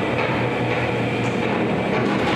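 Prison cell door swinging open, with a steady mechanical rumble from its automatic operator.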